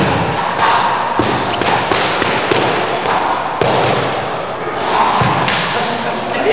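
Sparring in a boxing ring: irregular thuds and slaps of gloves and feet landing, over a steady noisy background hiss.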